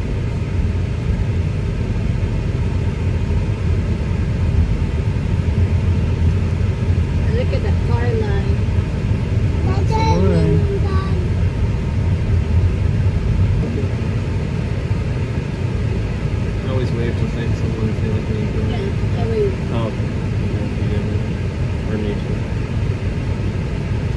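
Steady low rumble of a moving car heard from inside the cabin: road and engine noise while driving. Brief faint voices come through a couple of times.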